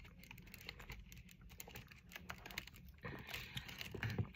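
Fingers tapping on and handling a cardboard Lindt chocolate box: a faint run of light, quick clicks like typing, busier near the end.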